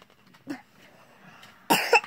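A woman coughing, one hard cough near the end.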